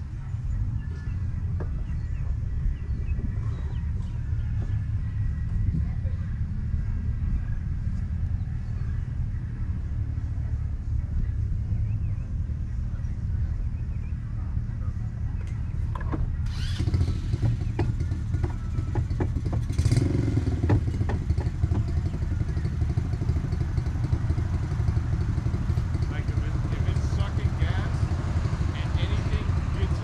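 Off-road vehicle engine running steadily with a low drone. From about 16 seconds in it gets louder, with more hiss up high, and it is loudest around 20 seconds.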